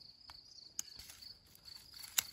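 Faint, steady high-pitched insect chirring, with a few light clicks near the middle.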